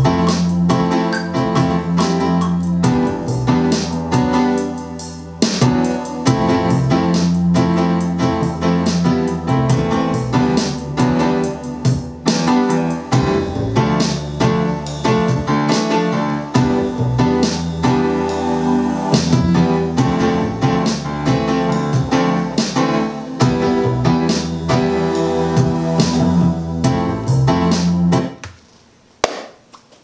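A produced beat playing back from Ableton Live: a drum pattern whose MIDI timing has a groove applied, loosening it off the grid, under held chords. Playback stops about a second and a half before the end.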